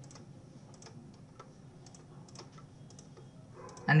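Faint, irregular clicks of a computer mouse and keyboard, a few each second, while schematic wires are drawn, over a low steady hum. A voice begins near the end.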